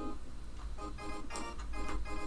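Sampled electric piano in the LMMS music program, playing repeated chords about three times a second. Chord stacking is switched on, so each note sounds as a chord.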